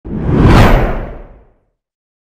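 Whoosh sound effect for an animated logo intro, with a deep low end: it swells quickly, peaks about half a second in, and fades away by about a second and a half.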